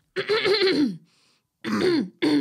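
A person imitating a nervous throat-clearing grunt: a voiced grunt with a falling pitch lasting under a second, then a second one starting near the end.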